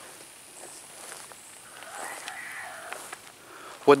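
Faint outdoor background with a brief, indistinct, voice-like sound about two seconds in, from a ghost box app playing on a phone.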